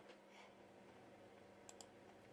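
Near silence with a faint steady hum, and two quick faint clicks close together near the end.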